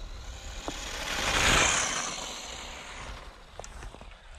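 Tamiya DF-03 electric 4WD RC buggy passing on packed snow: motor and tyre noise that swells to a peak about a second and a half in and fades as the buggy drives away.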